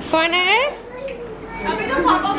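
A toddler's short, high-pitched shout that rises in pitch, about half a second long near the start; adult voices begin talking near the end.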